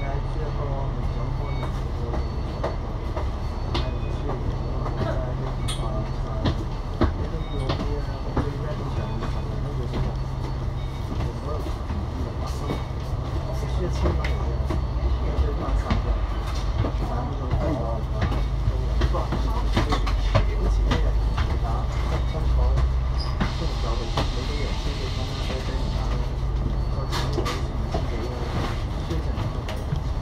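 Steady low drone of a Cummins L9 inline-six diesel bus engine idling, heard inside the cabin of an Alexander Dennis Enviro500 MMC double-decker waiting at a stop, with scattered clicks and rattles. The bus moves off near the end.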